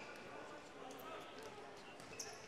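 Faint gymnasium ambience during a basketball game: crowd chatter with a basketball being dribbled on the hardwood court.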